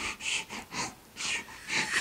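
Heavy panting: a quick run of breathy puffs, about two to three a second, of someone out of breath from hard exertion.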